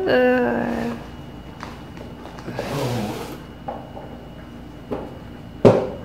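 A short held vocal sound at the start, then handling of a cardboard box as a tripod in its bag is taken out: a brief scraping noise in the middle and a sharp knock near the end.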